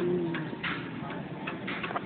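African grey parrot making a brief low hum, then a series of soft, irregular clicks, about six in two seconds.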